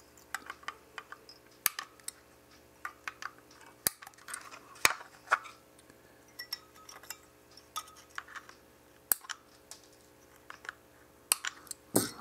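Nail clippers snipping the excess coil wire leads off the posts of a rebuildable dripping atomizer: a scatter of sharp metallic clicks and small clinks, about five of them louder than the rest.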